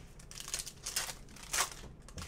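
Foil wrapper of a Panini Spectra basketball card pack crinkling and tearing as it is ripped open, in a few short crackles, the loudest near the end.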